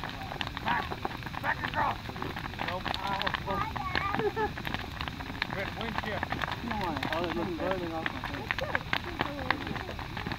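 Large wood bonfire burning, crackling with frequent sharp, irregular pops and snaps, with people talking in the background.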